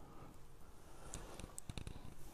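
Faint handling noise on a microphone that has lost its foam windscreen: a few soft clicks, most of them bunched in the second half.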